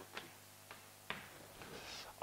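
Faint taps of chalk on a chalkboard: three short, sharp clicks in the first second or so, then a soft scrape.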